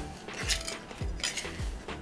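Metal bench scraper scraping and clicking against a granite worktop in a few short strokes as it slides under a ball of sourdough, over background music with a steady beat.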